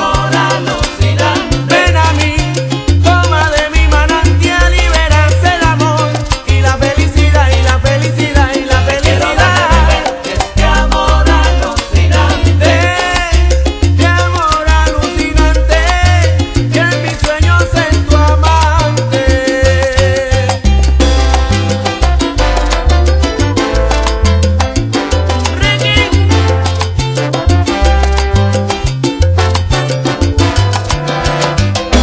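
Salsa music: a band recording with a pulsing bass line, dense percussion and melodic lines over the top, loud and steady throughout.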